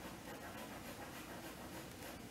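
Faint, repeated scratchy strokes of a drawing stick rubbing across paper on a large drawing, a few strokes a second.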